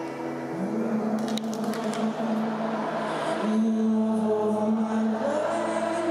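Acoustic guitar played live in an arena with a large crowd singing along in long held notes. A few sharp clicks come about a second and a half in.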